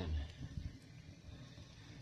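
Alcohol penny can stove with afterburner holes burning: a faint, uneven low rumble of the flame jets.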